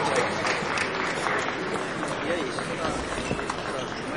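Indistinct murmur of spectators' voices echoing in a large sports hall, with a few faint scattered clicks.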